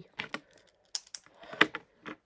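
A handful of light clicks and taps as a hand picks up a pen and handles small items on a tabletop, the sharpest about one and a half seconds in.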